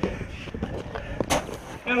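Scuffling of soldiers hauling a man up a concrete wall by the hands, with a sharp knock a little past halfway through. A man's voice starts at the very end.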